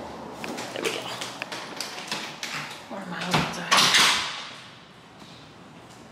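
Camera rubbing and knocking against clothing, then about three and a half seconds in a loud whoosh and thud that dies away over a second, the restroom door swinging shut.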